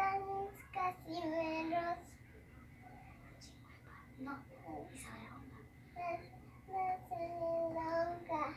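A young girl singing in short phrases with long held notes, one burst of phrases near the start and another near the end, with a quieter stretch in between.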